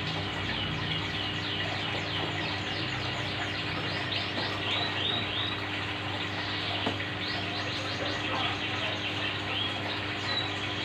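Steady bubbling hiss of an aquarium air stone over a low steady hum. Over it, a bird chirps in quick runs of short, high, falling notes, twice.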